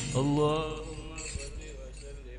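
A man's voice chanting one long, bending closing note through a microphone, fading out about a second in. Faint murmuring voices follow.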